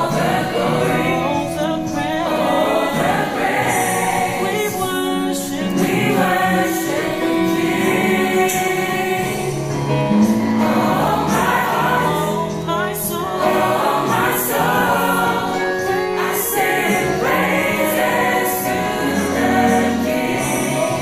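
Mixed-voice gospel choir, men and women, singing together in harmony.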